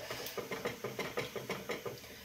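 Wooden spatula stirring and scraping in a wok-style pan of thick gravy, a quick run of light knocks against the pan at about five a second.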